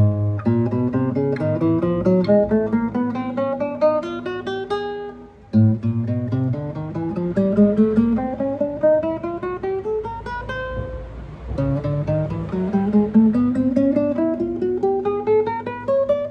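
A 1979 Takamine No.5-4 classical guitar played one plucked note at a time, fret by fret, climbing up the neck in three rising runs, with a short break about five and about eleven seconds in. This is a fret check: despite the low action, every note rings clean with no fret buzz.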